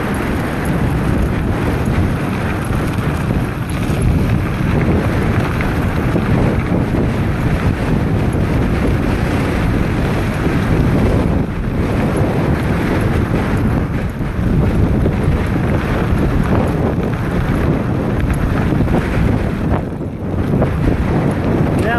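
Heavy wind noise on the microphone of a handlebar-mounted phone as a mountain bike rolls down a dirt and gravel road, with the knobby tyres rumbling over the gravel.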